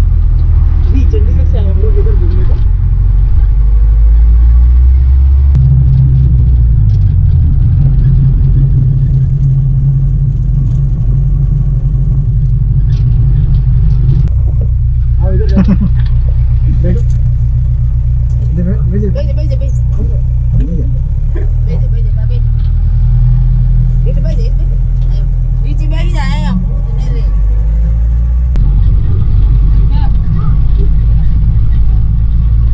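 Engine of a shared passenger vehicle running, heard from inside its open cabin: a loud, continuous low rumble whose pitch shifts a few times, with passengers' voices at times.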